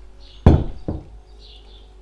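A full glass jar set down on a wooden worktop: one sharp knock about half a second in, then a lighter second knock.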